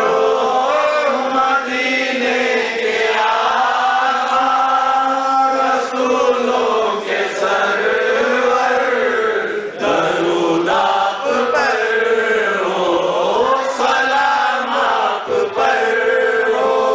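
Male voices chanting salawat, a devotional Islamic blessing on the Prophet, in a slow, drawn-out melody.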